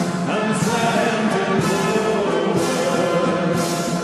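A national anthem playing as music, with a group of men singing along.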